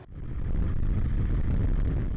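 Van Gölü Express passenger train running along the track, a steady low rumble that swells in over the first half second.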